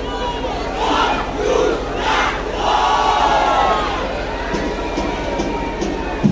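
Crowd cheering and shouting, with a few louder swells of shouts about one, two and three seconds in.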